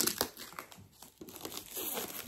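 Clear plastic wrapping on a Funko Pop box crinkling as fingers pick and pull at it, with a couple of sharp crackles at the start.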